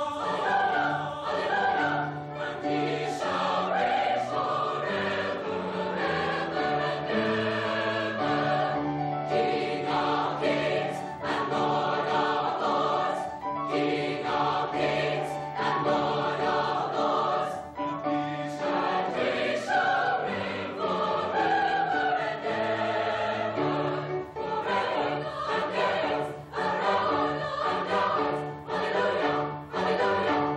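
Mixed choir of women's and men's voices singing, with notes held about a second or so and shifting in pitch.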